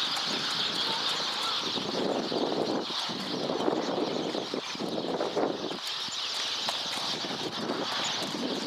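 Outdoor ambience of many small birds chirping steadily, with irregular rustling surges of noise underneath.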